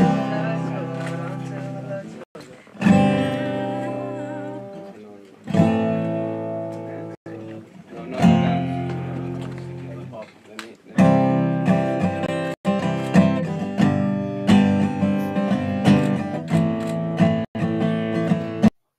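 Recorded song outro on acoustic guitar. Single strummed chords are each left to ring and fade, about every three seconds, then busier, quicker strumming starts about eleven seconds in. The sound cuts out briefly a few times.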